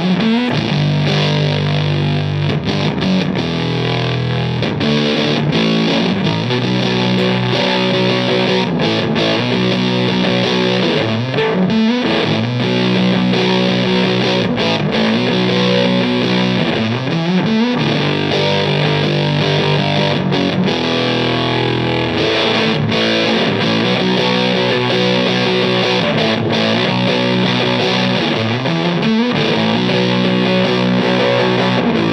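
Electric guitar played through the Supro 1304 germanium fuzz pedal into a Supro Jupiter amp with a 12-inch hemp-cone speaker: thick fuzz-distorted sustained notes and chords, with a few bent notes gliding in pitch.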